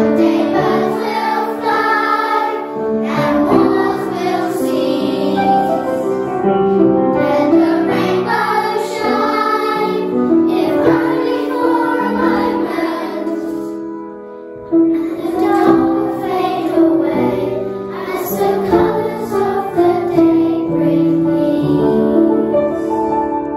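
A children's choir singing together, with a short break between phrases about two-thirds of the way through.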